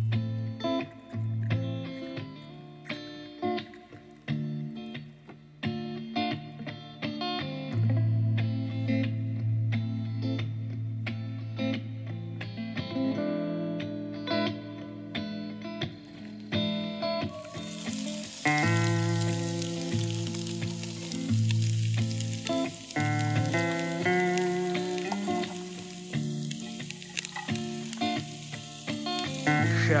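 Background music plays throughout. About seventeen seconds in, a steady sizzle of chopped vegetables frying in oil in a cast-iron pot over a propane fire pit joins it.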